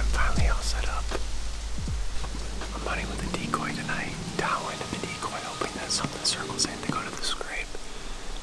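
Background music that stops about three seconds in, followed by a man whispering.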